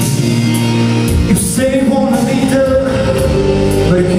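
A male singer singing a pop song into a handheld microphone over loud backing music, with vibrato on held notes near the middle.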